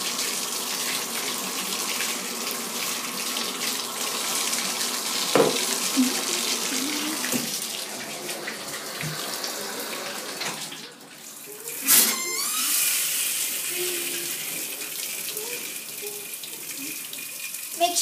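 Water running steadily from a tap into a bath, with a brief dip about eleven seconds in and a single sharp knock just after.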